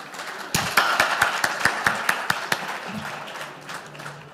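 Audience applauding: dense clapping starts about half a second in and dies away toward the end.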